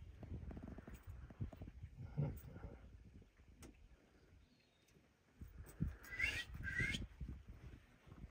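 Two short high-pitched chirping calls from an animal, about a second apart, near the end, over faint low rumbling.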